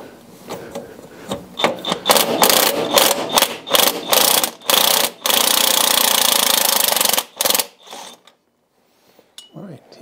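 Power wrench spinning a fastener off the hub of the tractor's transmission input gear. It runs in short stop-start bursts, then in one steady run of about two seconds, then a last brief burst, after which the fastener is off.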